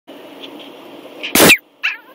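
A 10-week-old Yorkshire terrier puppy gives one sharp, loud bark about a second and a half in, then a short, softer yip just after.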